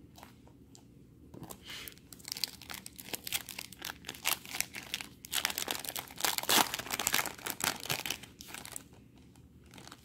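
Foil wrapper of a 2017 Topps Opening Day baseball card pack crinkling and tearing as it is torn open by hand. It starts about a second and a half in, is loudest in the middle, and fades out near the end.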